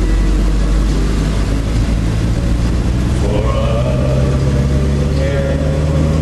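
Steady low engine and road drone heard inside a moving car's cabin; a voice joins in about three seconds in.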